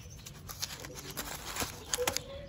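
Fingers handling a paper wrap and a nonwoven fabric cover around a plant stem, with scattered small crackles and rustles of paper and cloth.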